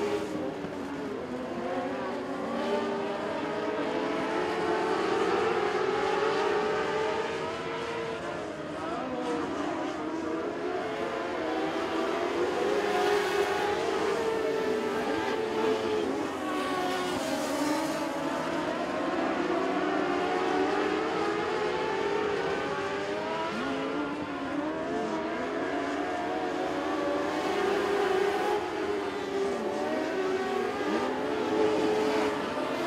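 A pack of Mod Lite dirt-track race cars running laps together, several engine notes overlapping and steady in loudness. Their pitches keep dipping and climbing again as the cars go through the turns.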